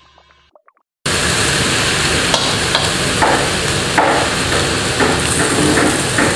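After about a second of quiet, sliced king oyster mushrooms with peppers and onion sizzle steadily as they are stir-fried in a stainless steel wok, with a few short spatula knocks and scrapes against the pan.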